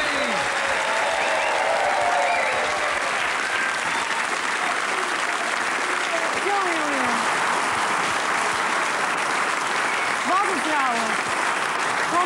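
Studio audience applauding steadily, with a few voices calling out over the clapping.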